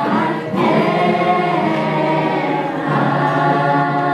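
A small group of voices singing together, holding long notes.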